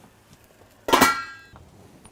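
A metal lid set down on a stainless steel sauté pan: one clank about a second in, ringing briefly as it fades.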